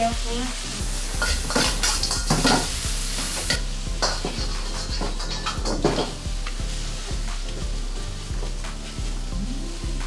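Food sizzling and frying in a pan, with utensils clinking and scraping against it. The hiss is strongest in the first few seconds.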